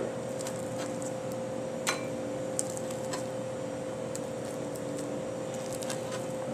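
A metal spoon scooping soft baked oatmeal out of a metal baking pan into a glass bowl, with a few light clicks and scrapes, the sharpest about two seconds in. A steady hum runs underneath.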